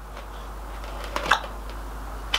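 Wooden sand-moulding flask being lifted and handled on a wooden bench: two or three short knocks and scrapes of wood and sand about a second in, over a low steady hum.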